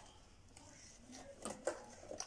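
Quiet room with faint handling noise: a couple of soft clicks and a brief rustle about one and a half seconds in, from small objects being handled.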